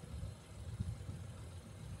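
A low, uneven rumble with no clear pitch, rising and falling in gusts: wind buffeting the microphone outdoors.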